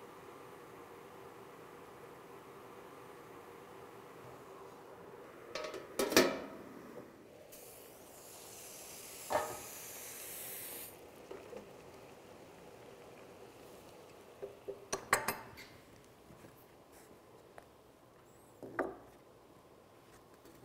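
Thin wooden box bands handled in a galvanized steel trough of hot water: a handful of sharp metallic clanks and knocks against the trough, the loudest about six seconds in, and about three seconds of water splashing in the middle.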